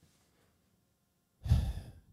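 After a pause of near silence, a man lets out a short breath or sigh into a close-up microphone about a second and a half in.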